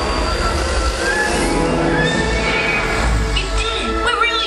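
Film soundtrack: music with a deep, steady rumble underneath, likely the time-machine travel effect, with a couple of short rising tones.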